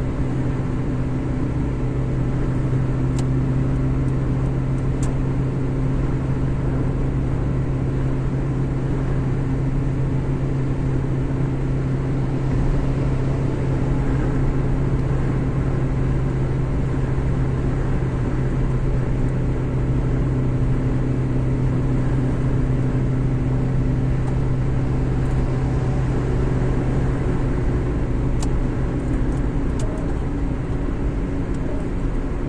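Steady road noise inside a car's cabin while cruising on a motorway: tyre noise on the road surface and engine drone, with a strong low hum that stays level throughout.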